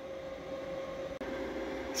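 Steady background hum and hiss, like a running cooling fan, with a faint steady tone under it; nothing else happens.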